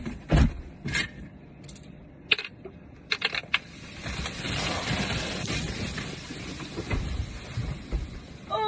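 Two-litre bottle of cola erupting in a foaming geyser: a few knocks and clicks of the bottle being handled, then about four seconds in a loud fizzing hiss of spraying soda that lasts a couple of seconds and dies away.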